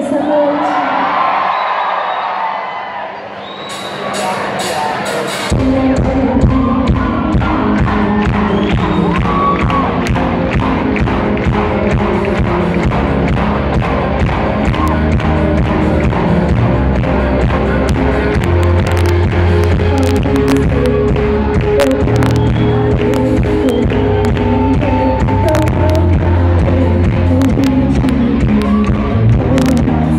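Live worship band with a singer: for the first few seconds a voice and crowd voices, then about five seconds in the full band comes in with drums, bass guitar and keyboard and plays on steadily.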